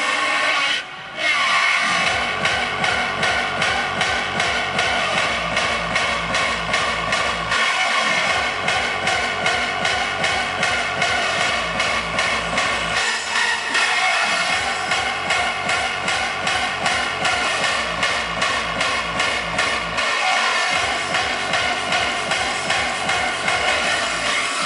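Hardstyle dance music played loud over a festival sound system and heard from within the crowd. After a short break about a second in, a steady, pounding kick drum comes in, and the bass drops out briefly a few times.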